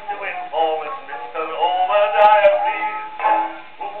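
Male music-hall singer with band accompaniment, played from a 1914 shellac 78 rpm disc on a horn gramophone, the sound narrow and thin with nothing above the upper midrange. A single click cuts across the music about two seconds in.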